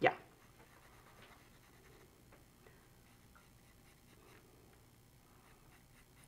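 Faint, light scratching of a charcoal pencil on sketchbook paper: a few short, scattered strokes over quiet room tone.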